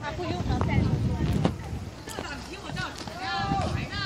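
People talking and calling out, with wind buffeting the microphone and making a low rumble, strongest in the first second and a half.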